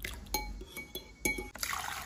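A perforated plastic scoop knocks twice against a glass bowl, the glass ringing briefly each time. About one and a half seconds in, water starts pouring and splashing through a plastic colander.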